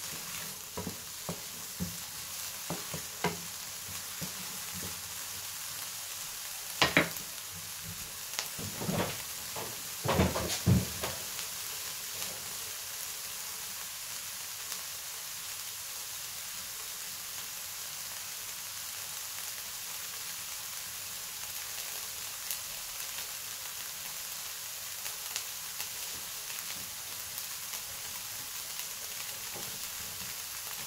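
Diced red onion sizzling steadily in a non-stick frying pan. It is stirred with a wooden spoon for the first ten seconds or so, with scrapes and a few sharp knocks against the pan, the loudest about seven and ten seconds in. After that only the even sizzle remains.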